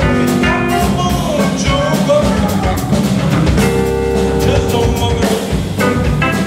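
Live blues-funk band playing: electric guitar, electric bass, keyboard and drum kit, with a voice singing at times. A chord is held for about a second and a half past the middle, over steady drum hits.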